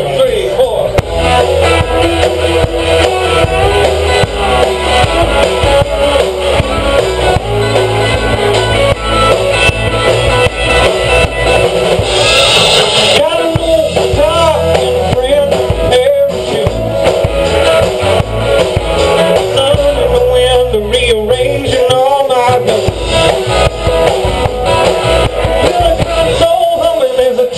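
Live rock band playing: electric guitars, bass guitar and a drum kit, loud and steady, with a guitar line bending up and down in pitch over the bass and drums.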